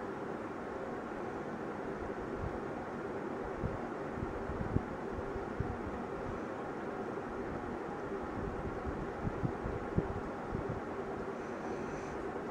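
Steady background hum and hiss of room noise, with a few soft low thumps about four to five seconds in and again around nine to ten seconds.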